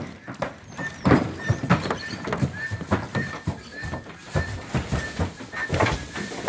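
Lusitano horse's hooves knocking and thudding irregularly on a horse trailer's ramp and floor as it walks in.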